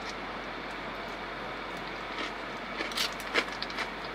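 Steady running noise inside a parked car's cabin, with a few faint clicks in the second half as someone eats salad with a plastic spoon.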